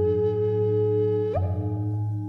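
Layered sound-bath music: a native American flute holds a long note over sustained ringing of crystal and Tibetan singing bowls with a deep steady hum beneath. About one and a half seconds in, the held note slides up as a bowl is struck softly.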